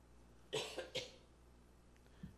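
A person coughing twice, two short bursts about half a second apart.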